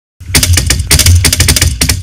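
Rapid, loud clattering hits over a deep bass, starting a moment in and running in quick clusters.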